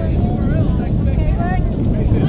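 Wind rumbling on the microphone, with high-pitched girls' voices calling out and cheering near the camera.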